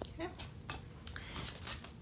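A few faint, sharp clicks and taps as a light cup is handled and set down.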